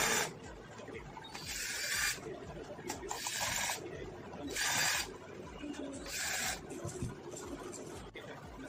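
A hand screwdriver turning screws to fix AC socket modules into a 3D-printed plastic panel, heard as four short scraping strokes about a second and a half apart.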